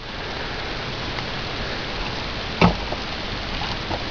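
Steady hiss of background noise, with one short light knock about two and a half seconds in.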